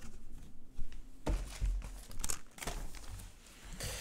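A vinyl LP record being handled and set down: irregular rustling and light knocks, busiest from about a second in until shortly before the end.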